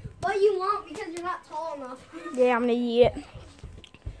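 A child's voice crying out in wordless yells that end in a held, steady cry, with a low thump near the end.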